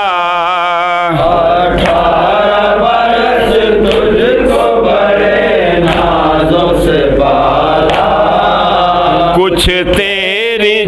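Men chanting a noha, a Shia mourning lament, in a wavering sung recitation, with more voices joining and thickening the chant about a second in.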